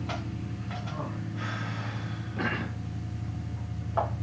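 Steady low electrical hum from switched-on guitar amplifiers and PA, with a few brief soft noises of people moving and breathing near the microphone.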